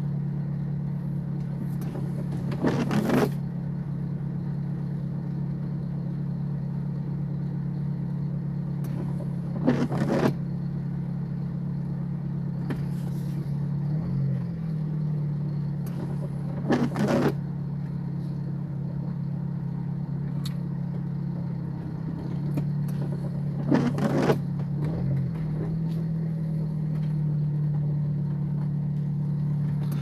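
Car engine idling with a steady low hum heard from inside the cabin, while the windshield wipers sweep the rain-wet glass on an intermittent setting: a brief swish about every seven seconds, four times.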